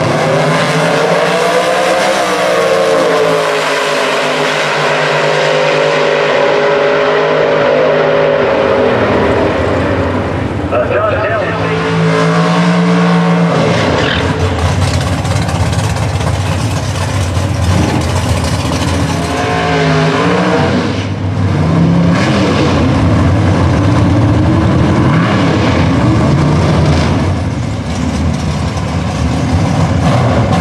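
Drag-racing cars launching at full throttle: the engine notes climb over the first couple of seconds, then hold at high rpm as the cars run down the track. About 13 seconds in, the sound changes to a rougher, noisier engine roar with revving, from a drag car at the starting line.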